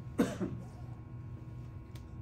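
A person coughs once, sharply, about a fifth of a second in, over a steady low room hum.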